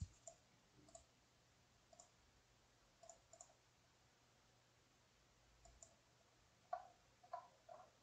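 Faint computer mouse clicks, single and in quick pairs, scattered over several seconds, with a louder run of three near the end, over a low steady hum.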